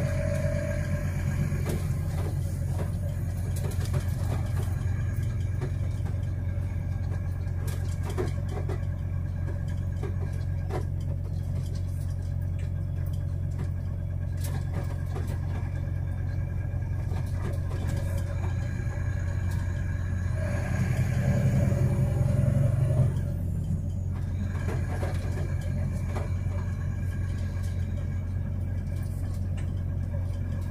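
Truck engine and road noise heard from inside the cab while driving, a steady low drone that swells louder for a couple of seconds about 21 seconds in.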